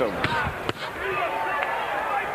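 Boxing gloves smacking as punches land, a couple of sharp hits with the clearest about three-quarters of a second in, over the steady murmur of an arena crowd.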